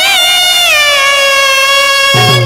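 A woman singing one long held note in a Marathi devotional song: the pitch wavers at first, then slides down and holds steady.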